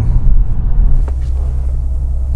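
Infiniti G37's 3.7-litre V6 and road noise heard from inside the cabin while driving, a low uneven rumble that settles into a steadier low hum about a second in.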